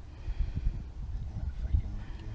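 Wind buffeting an unshielded microphone outdoors: an uneven, gusting low rumble.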